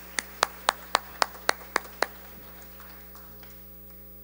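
One person clapping nine times in an even beat, a little under four claps a second, stopping about two seconds in. A steady low hum runs underneath.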